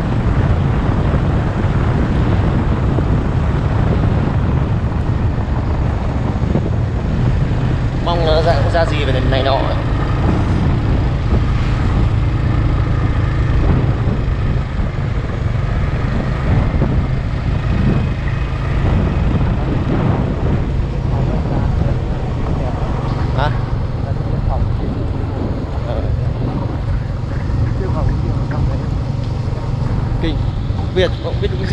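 Steady low rumble of a vehicle travelling on a wet road, mixed with wind on the microphone. A brief wavering, voice-like sound comes about eight seconds in.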